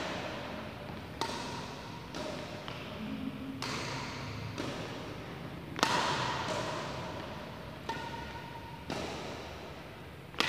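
Badminton rally: racket strings striking a shuttlecock back and forth, about seven sharp hits roughly a second apart, each ringing briefly in a reverberant hall. The loudest hit comes about six seconds in.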